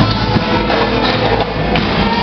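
Live cumbia band playing a medley, loud and continuous.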